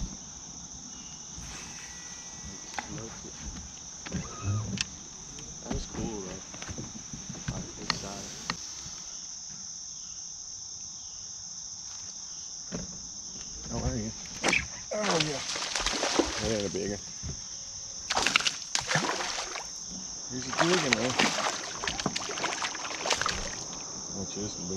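Steady high-pitched chirring of an insect chorus, with scattered short clicks and knocks of fishing gear. Voices come in over it in the second half.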